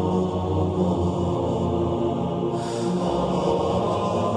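Slow intro music built on a chant-like vocal drone of long held low notes. About two and a half seconds in, a brief rush of hiss swells over it.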